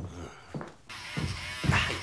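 Electric hair clipper buzzing, starting suddenly about a second in, during a home haircut, with a man's short 'ah' near the end.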